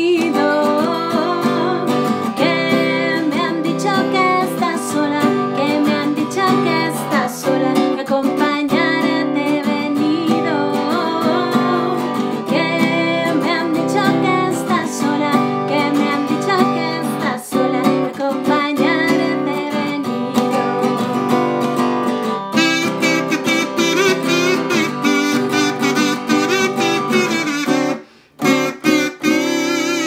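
A woman sings with her own strummed Gibson acoustic guitar. In the last several seconds a neck-held harmonica takes over the melody over the guitar, after a brief break just before the end.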